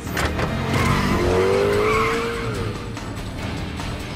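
A speeding car with its tyres squealing for about a second and a half in the middle, the squeal rising then falling in pitch, over a steady low rumble and film score music.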